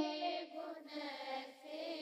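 The end of a sung line of a Sinhala Buddhist devotional verse fades out over about half a second. A quiet pause follows, with only faint traces of the voice.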